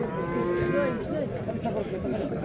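A young calf bawling once, a call about a second long near the start, over background voices of a crowd.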